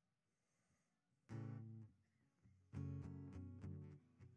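Acoustic guitar strumming chords: near silence, then a single strummed chord about a second in, then steady rhythmic strumming from near the middle on, starting the song's instrumental intro.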